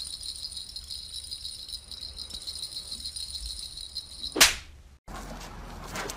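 A small jingle bell rattling steadily as a cat wand toy's ball is shaken, ending in a brief loud noise about four seconds in. After a cut, there is outdoor background noise with scattered clicks.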